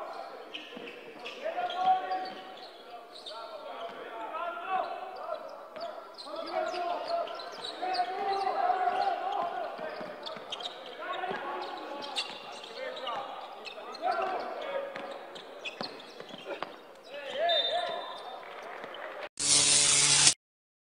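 Basketball game sounds in a large echoing arena: the ball bouncing on the hardwood, short squeaks and knocks of play, and voices calling out on the court. A sudden loud burst cuts in just before the end.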